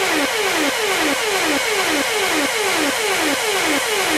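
Electronic dance track in a breakdown with no kick drum or bass: a buzzy synth figure of short falling pitch sweeps repeats about three times a second over a steady hiss.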